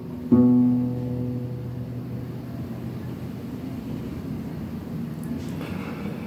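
Nylon-string classical guitar: one last chord is plucked about a third of a second in and left to ring out, fading away over a couple of seconds. It closes the piece.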